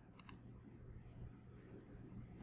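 Near silence with faint computer mouse clicks: two quick clicks about a fifth of a second in and a single click near the end.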